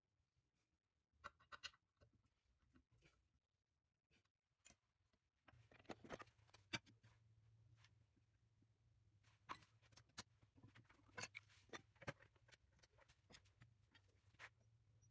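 Near silence with scattered faint clicks of handling; about a third of the way in a faint low steady hum starts.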